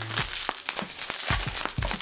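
Plastic bubble-wrap packaging crinkling and crackling as hands pull it off a small cardboard box, with several sharper crackles in the second half.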